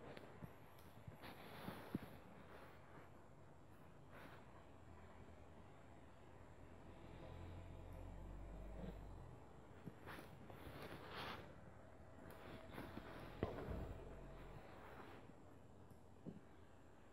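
Near silence with faint handling noises: a few light clicks, the sharpest about two seconds in and again near fourteen seconds, and brief rustles around ten to eleven seconds.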